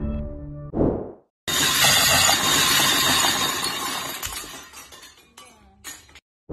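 Music, then about a second and a half in a loud crash of shattering glass that dies away over a few seconds into scattered clinks of falling pieces.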